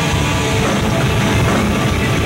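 Thrash metal band playing live: distorted electric guitars, bass and drum kit, loud and dense without a break.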